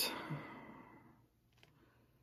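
A man's audible sigh, a breathy exhale that fades away over about a second.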